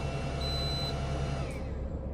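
Inside a van cab: a low, steady hum under a high electronic beep about half a second in, part of a series of beeps about a second apart, and a steady whine that winds down about one and a half seconds in.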